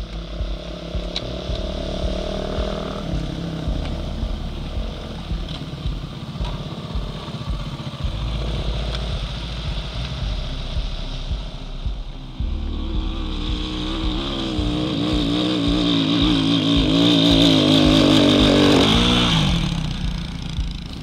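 Off-road motorcycles riding through a shallow river, their engines running with a wavering pitch as the riders work the throttle. One bike comes close, growing louder near the end, then fades away.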